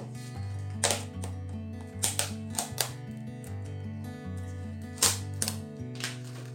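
Background music with a steady bass line, over which come about seven sharp clicks and knocks of clear plastic tubs being handled with gloved hands. The loudest clicks fall about a second in, around two seconds in and just after five seconds.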